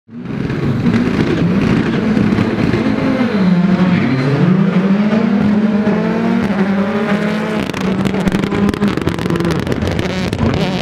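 Škoda Fabia R5 rally car's turbocharged 1.6-litre four-cylinder engine running hard as the car drives past. The revs dip about three and a half seconds in and climb again. A run of sharp crackles comes in the last couple of seconds.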